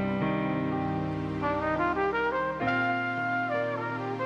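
Trumpet playing a slow, soulful melody line over piano and bass accompaniment. It moves through several notes and holds one longer note near the end.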